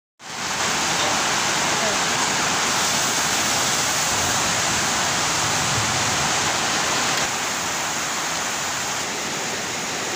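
Steady, loud hissing sizzle of ground spice paste frying in oil in a wok, dipping slightly in level about seven seconds in.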